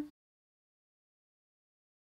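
Complete silence, after a sung note cuts off right at the start.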